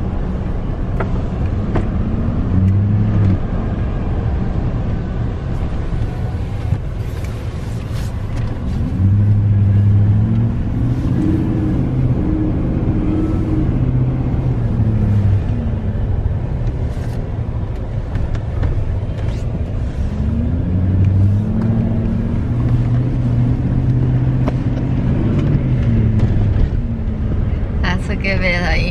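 Car engine and road rumble heard from inside the cabin while driving, steady and low. Twice the engine note climbs and falls back as the vehicle speeds up and eases off, once near the middle and again in the later part.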